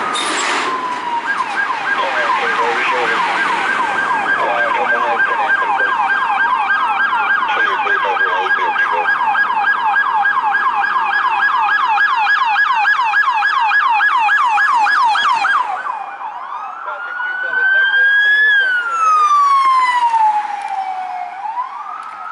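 Police car electronic sirens sounding a fast yelp: rapid, repeated up-and-down sweeps in pitch. About sixteen seconds in, the yelp stops and the siren changes to a slow wail that rises for a couple of seconds, falls, then starts to rise again near the end.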